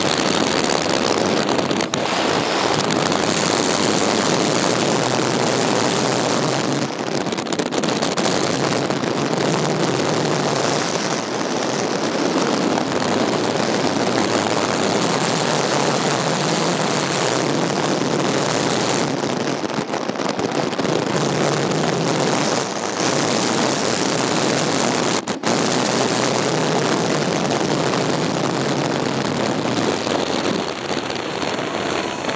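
Personal watercraft under way, its engine and the rush of water making a loud, steady noise.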